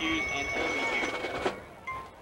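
Marching band music on a stadium field, with a held high note and voices mixed in, stopping abruptly about one and a half seconds in.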